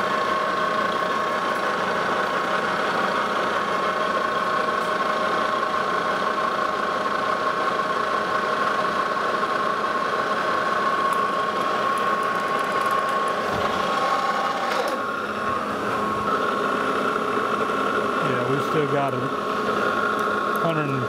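Lodge & Shipley manual metal lathe running with a steady gear whine while the tool takes a facing cut across the end of a high-carbon steel hex-bar bolt. The spindle is stopped near the end.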